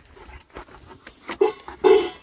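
A dog in its kennel making short vocal sounds, the two loudest about a second and a half in and near the end.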